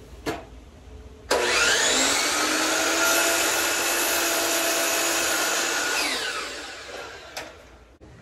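DeWalt sliding compound miter saw motor switched on about a second in, spinning up quickly to a steady whine, running for several seconds, then winding down with falling pitch near the end.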